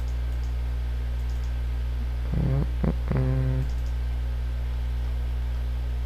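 Steady low electrical hum with a few faint mouse clicks, and a man's short wordless hum of thought in the middle.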